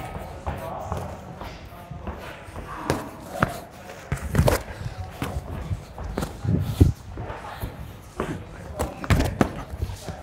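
Boxing gloves thudding as punches land during light sparring, with feet shuffling on the ring canvas: irregular thuds every second or two.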